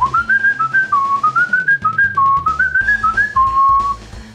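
A person whistling a short tune: quick notes stepping up and down, ending on one long held note near the end.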